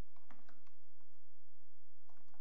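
Faint, irregular clicks of typing on a computer keyboard over a steady low electrical hum.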